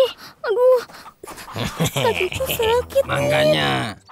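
A cartoon character's voice crying 'aduh, aduh' (Indonesian for 'ouch') again and again, with moaning, drawn-out cries of pain between the words.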